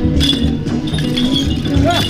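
Temple procession music with a steady low drumbeat about three times a second and sustained tones, with metallic clinking and jingling over it near the start and end.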